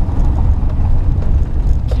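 Van driving, heard from inside the cabin: a steady low rumble of engine and road noise.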